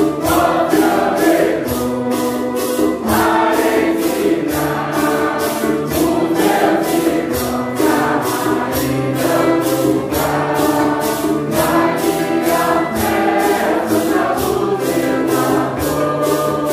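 A congregation of women and men singing a Santo Daime hymn in Portuguese together, with violin accompaniment and maracas shaken in a steady beat of about two to three shakes a second.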